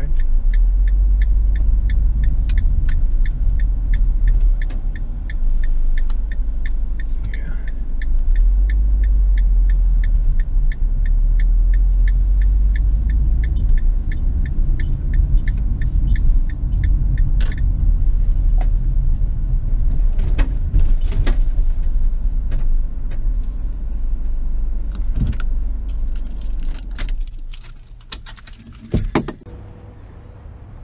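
Car interior driving noise: a low, steady road and engine rumble with a regular ticking over the first half. Near the end the rumble drops away and a few sharp knocks follow.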